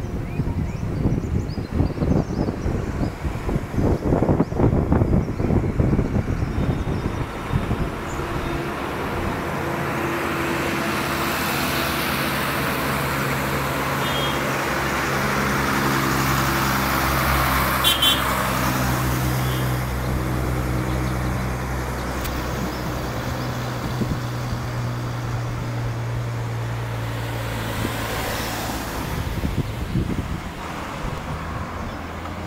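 Wind buffeting the microphone for the first several seconds, then a goods truck's diesel engine drone on the road, swelling as it passes, loudest about halfway through, and fading away near the end, with tyre and road noise.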